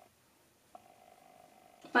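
Near silence: faint room tone with a thin steady hum, then a woman starts talking at the very end.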